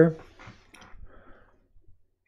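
Faint clicking from a computer mouse as a web page is scrolled, just after a spoken word ends.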